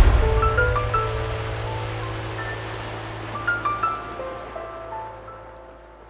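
Sea surf washing in and fading away over about four seconds, under a slow background melody of single held notes.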